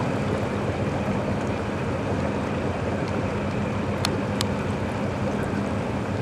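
Fishing boat's engine idling steadily, a low even hum over water noise, with two short clicks about four seconds in.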